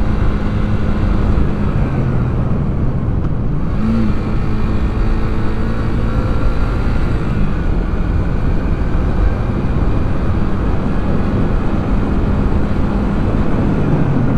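Yamaha YB125SP's air-cooled single-cylinder four-stroke engine running at a steady cruise on the open road, with wind rushing over the microphone. The engine note shifts briefly about four seconds in.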